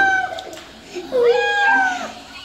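Cat meowing while being bathed: two long, drawn-out meows, the first tailing off just after the start, the second starting about a second in.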